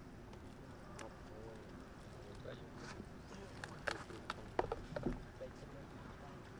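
A few sharp clicks and light crackles, mostly bunched between about three and a half and five seconds in, from a baby macaque handling a twig and moving over rock and dry leaf litter. Under them runs a steady, low background rumble.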